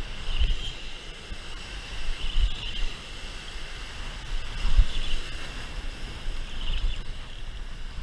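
Spinning reel cranked steadily by hand, heard through a rod-mounted camera against wind and surf, with a low thump and a brief rise about every two seconds.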